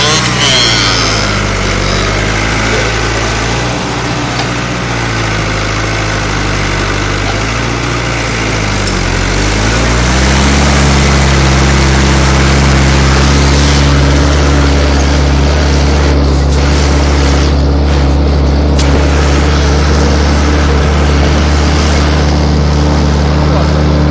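New Holland TD80D tractor's diesel engine working a field with a Galucho implement. Its speed sags a little twice, then about ten seconds in it picks up and holds steady and louder.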